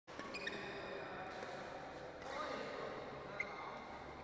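Badminton play in a large, echoing hall: court shoes squeaking on the floor near the start, voices, and one sharp click about three and a half seconds in, as the rally ends.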